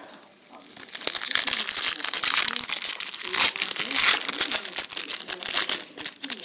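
A Topps 2018 Series One baseball card pack's shiny wrapper being opened and crinkled by hand: a loud, dense crackling that starts about a second in and keeps on.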